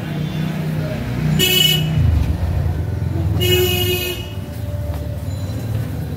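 Two short vehicle horn honks, the first about a second and a half in and the second, slightly longer, at about three and a half seconds, over the steady low rumble of a running motor vehicle engine.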